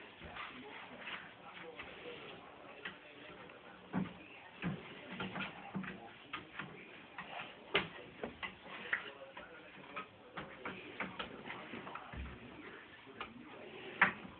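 Scattered light knocks and taps, irregular and short, as a child climbs barefoot up a wooden bunk-bed ladder.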